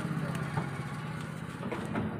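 A vehicle engine idling steadily close by, a low even hum.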